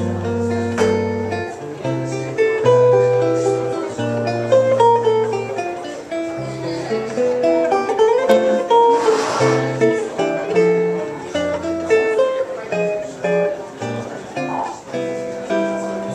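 Solo guitar playing an instrumental break in a jazz tune: plucked melody notes moving over bass notes and chords.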